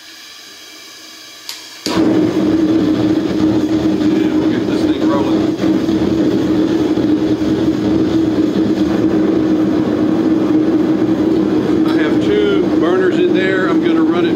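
Propane forge burner catching about two seconds in, after a quieter hiss of gas, then running loud and steady with a constant low drone.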